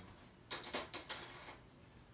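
Metal spoons clinking together as they are taken from the silverware: a quick run of sharp clicks lasting about a second, starting about half a second in.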